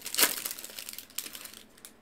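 Plastic wrapper of a 2023 Bowman baseball card pack crinkling as it is pulled open and off the cards. The crackle is loudest just after the start and thins out toward the end.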